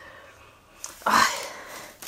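A single short breathy puff about a second in, fading over about half a second.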